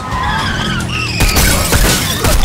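Vehicle tyres skidding and screeching on asphalt, with a loud rush of skid noise from about a second in, over a film score with a pulsing, siren-like rise-and-fall tone.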